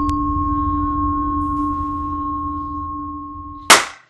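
Sound-art drone of two steady held tones over a low rumble, fading over the last second. It ends in a loud, short burst of noise near the end that cuts off to silence.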